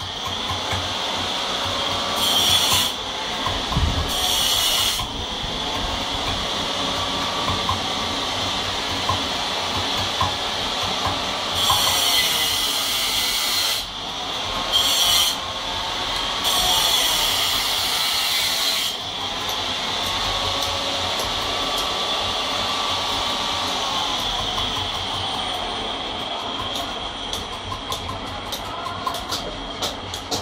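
Marble being worked by hand with a metal tool: steady scraping noise with several louder hissing strokes lasting a second or more, and a run of quick light ticks near the end.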